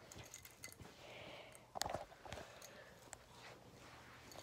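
Quiet room with faint scattered small clicks and rustles, and one soft knock about two seconds in.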